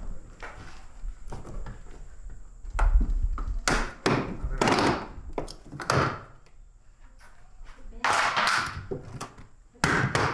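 Plastic interior trim panel of a Nissan Leaf's rear hatch being pulled and worked free by hand: a low thump about three seconds in, then a series of short scraping, rustling pulls.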